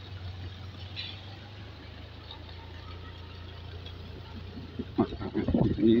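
An engine running steadily with a low, even drone.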